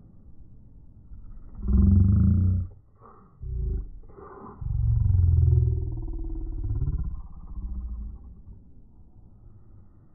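Deep, drawn-out voice played back slowed down, in several loud roaring bursts. The loudest bursts come about two seconds in and from about five to seven seconds in, with a short upward glide near the end.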